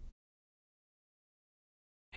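Silence: the soundtrack drops to digital silence between narration lines.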